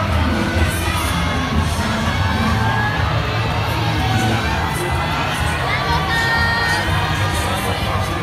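Spectators shouting and cheering continuously, calling out to the couples on the dance floor, with ballroom dance music faint underneath.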